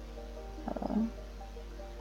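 A steady low hum with faint background music under it, and a short hesitation sound from a man's voice, a drawn-out 'eee', about a second in.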